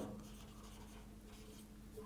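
Faint strokes of a marker pen writing a word on a whiteboard, over a low steady hum.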